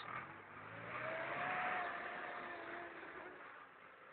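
Manitou MLA 628 telehandler's engine running as the machine drives along, the sound swelling for about two seconds and then fading, with a faint whine that rises slightly and then holds.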